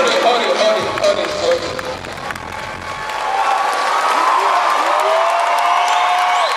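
Live stage performance: a backing track with a bass beat that drops out about two seconds in, then long held, gliding vocal notes over crowd noise.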